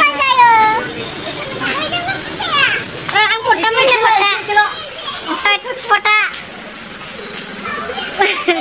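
Several people talking and calling out in high, excited voices, with a quieter stretch near the end.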